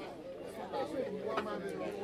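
Several people talking at once in a room: overlapping chatter of a gathered crowd, with one sharp click about one and a half seconds in.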